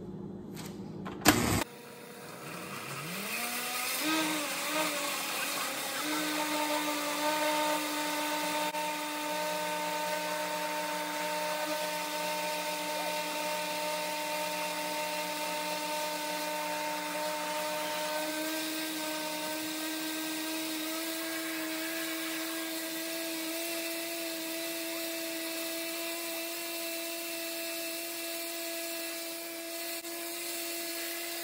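Countertop blender switched on with a click; the motor whine rises in pitch as it spins up, churns unevenly for a few seconds while the chunks of fruit break up, then settles into a steady whine blending fruit, water and sea moss into a smoothie. The pitch steps slightly higher about eighteen seconds in.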